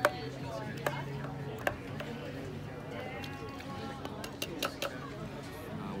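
Wooden muddler knocking and grinding against the bottom of a stainless steel cocktail shaker while muddling mint: a few sharp knocks, one at the start, then about a second apart, and a quick cluster of three near five seconds in, with voices chattering in the background.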